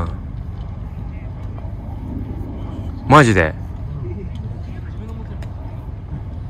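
Steady low rumble of wind on the microphone. A man gives a short 'mm' about three seconds in.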